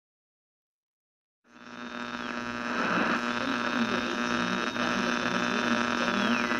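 Dead silence for about a second and a half, then an electrical hum and buzz fades in and holds steady. A thin high whistle dips in pitch and comes back, like the noise of an untuned analogue TV.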